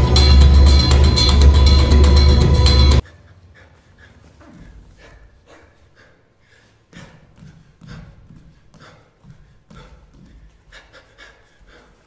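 Loud music with a heavy bass cuts off abruptly about three seconds in. Then a dancer's heavy panting follows, short irregular breaths of someone out of breath after exertion.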